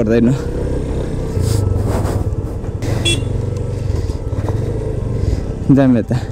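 Motorcycle engine running steadily while the bike rides along a rough dirt and gravel track, with a brief voice at the start and end.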